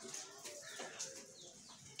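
Faint bird calls in the background: a few short chirps that glide up and down in pitch.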